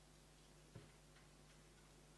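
Near silence: room tone with a steady low hum, broken by a soft click a little under a second in and a couple of fainter ticks after it.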